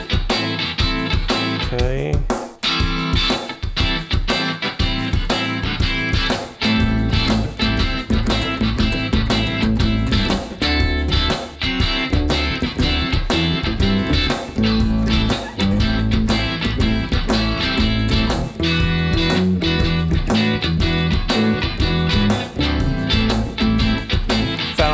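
Electric guitar played over a looped shuffle drum beat: a few higher notes at first, then from about six seconds in a repeating low-note bass line.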